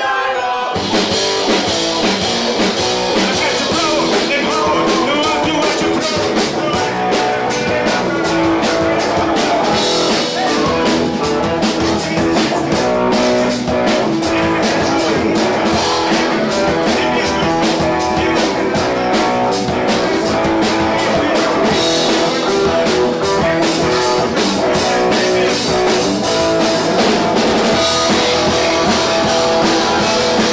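Live rock band playing loud: distorted electric guitars, bass and drum kit with a fast, driving drumbeat, and a shouted lead vocal over it. The full band comes in hard about half a second in and keeps going.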